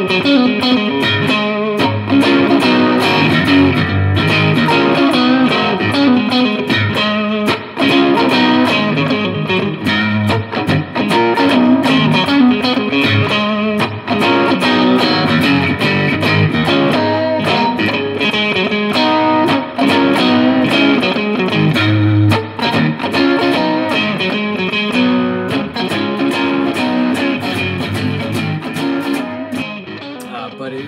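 A 2019 Fender Stratocaster Vintera '50s electric guitar, tuned two and a half steps down, played through an amplifier: continuous picked riffs and chords, fading out near the end.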